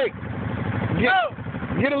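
ATV engine running at a low, steady idle, with a brief shouted call from a voice about a second in.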